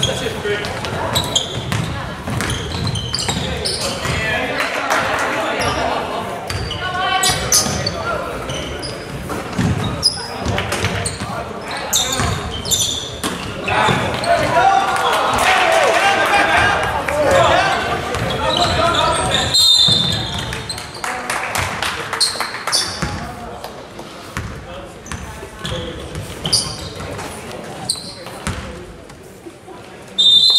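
Basketball bouncing on a hardwood gym floor during play, with voices of players and spectators calling out, echoing in the hall; the calling is loudest about halfway through and fades near the end.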